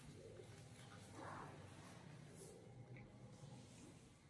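Near silence: room tone with faint rustles of paper sheets being folded by hand, a slightly louder rustle about a second and a half in.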